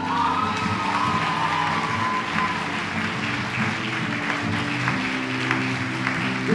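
Audience applauding over an acoustic guitar that keeps strumming sustained chords, with a long high call from the crowd over the first couple of seconds.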